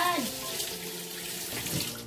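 Water running steadily from a kitchen tap, shut off abruptly near the end.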